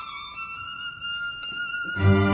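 Solo violin holding a long high bowed note, unaccompanied.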